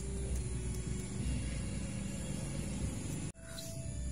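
A steady low rumble that drops out abruptly for a split second about three seconds in.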